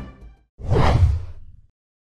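A whoosh transition sound effect that swells and fades over about a second, marking a graphic wipe between news items, after the last of the background music dies away.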